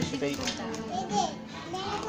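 Young children talking and chattering at a table, their voices gliding up and down in pitch, over a low steady background hum.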